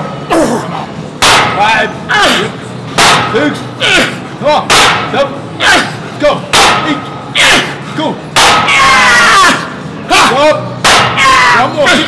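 Barbell loaded with iron plates being rowed for heavy reps, the plates knocking sharply about once or twice a second, with strained grunts and shouts over it. A long, loud yell comes a little over eight seconds in.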